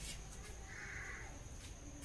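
A single faint, distant call, like a bird's, about a second in, lasting about half a second, over quiet room tone with a faint steady high whine.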